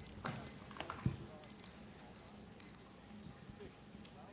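Digital timer beeping: about six short, high electronic beeps at uneven spacing over the first three seconds, as it is set and started for a 30-second countdown, with a few soft knocks early on.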